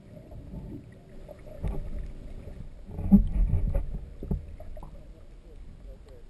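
Muffled underwater sound picked up by a GoPro in its waterproof housing: a low rumble of moving water with scattered knocks and clicks, swelling about three seconds in.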